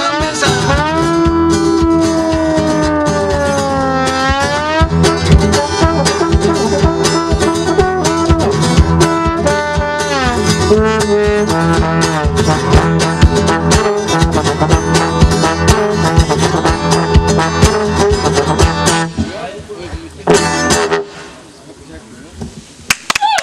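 Trombone and strummed acoustic guitar playing blues together, the trombone sliding down and back up in long bent notes at the start. The music breaks off about 19 seconds in, with a short final flourish a second or so later before it goes quieter.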